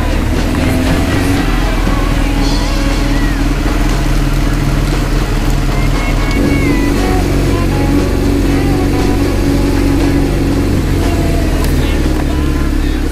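Sportbike engine running steadily while riding on wet streets, its note lifting a little about six seconds in, with music mixed over it.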